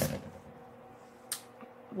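A pause between words: quiet room tone with a faint steady hum, and one brief soft hiss a little over a second in.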